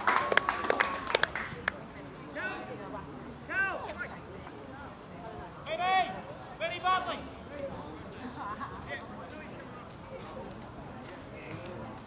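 Outdoor football ground: a few scattered claps fade out in the first second or two, then several short, high-pitched shouts from players or spectators across the field, a handful of calls between about two and seven seconds in, over a steady open-air background.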